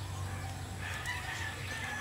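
A rooster crowing faintly: one call lasting about a second, in the middle.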